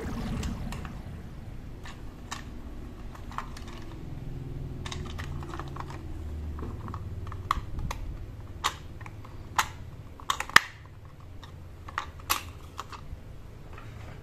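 Hard plastic toy car being handled in the hands: a scattered run of light plastic clicks and taps, with a sharper cluster of clicks a little after halfway.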